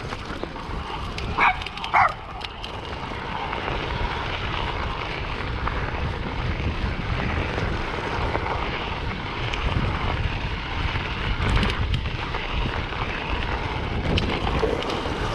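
Mountain bike rolling on a gravel track, with wind buffeting the microphone and tyre crunch. About a second and a half in there are two short barks, half a second apart, from a dog.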